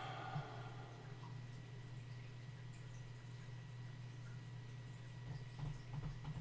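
Quiet room tone with a low steady hum.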